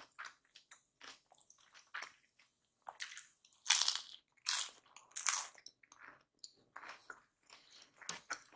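Crisp fresh lettuce leaf bitten and chewed close to the microphone. Soft mouth sounds come first, then a few loud crunches about four to five and a half seconds in, then quieter chewing.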